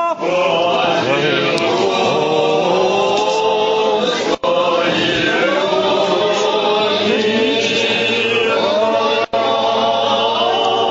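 Orthodox liturgical chant sung by several voices, held notes moving slowly in pitch, with two very brief dropouts, about four and a half and nine seconds in.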